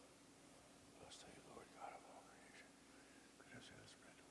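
Near silence in a large room, with faint whispered words about a second in and again near the end, and a few light clicks of altar vessels being handled.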